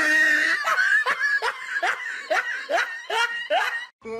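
Rapid, high-pitched laughter in about eight short bursts, roughly two and a half a second, each rising in pitch, breaking off abruptly at the end.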